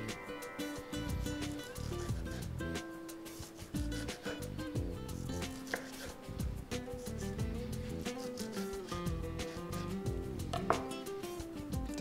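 Serrated knife cutting a lemon into thin slices on a plastic cutting board: a run of light taps of the blade on the board, over steady background music.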